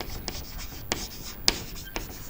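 Chalk writing on a chalkboard: faint scratching with a few sharp taps as the letters are written, two of them louder, about a second in and halfway through.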